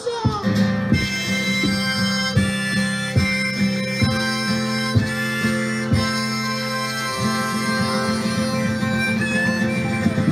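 Live band music with a steady beat and long held notes: an instrumental passage of the song, with no singing.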